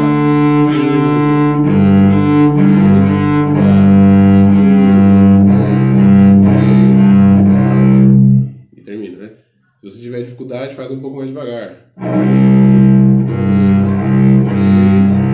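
Cello played with the bow: a slow study exercise of long sustained notes in the low and middle register, changing pitch about once a second. The playing breaks off about eight and a half seconds in for a few seconds of much quieter sound, then starts again about twelve seconds in.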